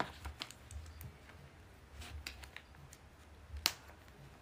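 Scattered light clicks and taps, irregular and quiet, from hands fiddling with a small object on a cloth-covered table. The sharpest click comes near the end, over a low steady room hum.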